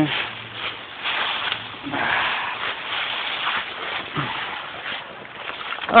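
Scuffing and rustling in dry leaf litter and brush, uneven and swelling and fading, with handling noise on a phone microphone as someone scrambles down a creek bank.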